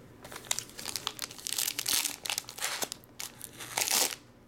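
Foil trading-card pack wrapper crinkling in the hands, with a run of crackly bursts, then torn open in a loud rip near the end.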